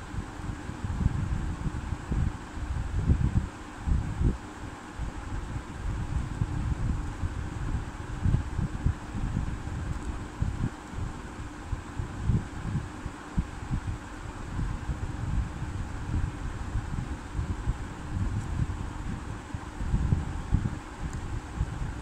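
Steady background hum and hiss with irregular low rumbling, like air moving across a microphone.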